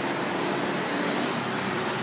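Steady, even background din of a roadside eatery with road traffic, with no sudden events.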